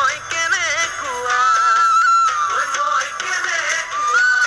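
An Assamese Bihu song: a voice singing over music, wavering through ornamented turns and then holding long notes.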